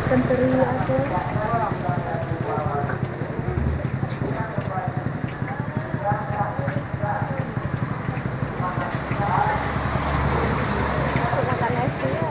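Indistinct voices and the general bustle of a busy market stall, with crackling of plastic snack bags being handled over a steady low hum.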